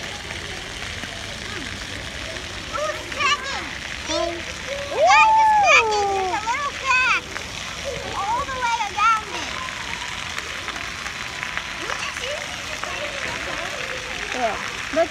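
Splash-pad fountain water running steadily, with children's voices over it, loudest in a long drawn-out call about five seconds in.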